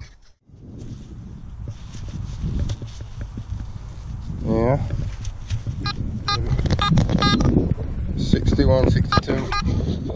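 Quest Pro metal detector sounding electronic target tones: a tone that dips and rises about four and a half seconds in, then a run of short repeated beeps from about six seconds, and more near the end, over a steady low rumble.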